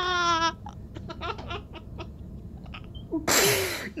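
A man sobbing: a wavering crying wail at the start, then quiet catching sniffles, and a loud snotty sobbing breath lasting most of a second about three seconds in.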